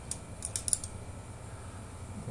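A handful of small, sharp plastic clicks in the first second from a flip-up clip-on sunglass lens being handled and clipped onto a pair of metal-frame prescription glasses.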